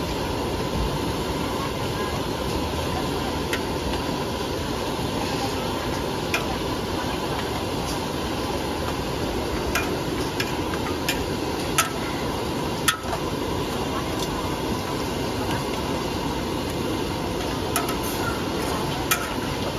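Instant noodles frying in a large steel wok, a steady hiss of sizzling and steam. A metal spatula and ladle clink and scrape against the wok now and then as the noodles are tossed, several sharp ticks in the middle of the stretch.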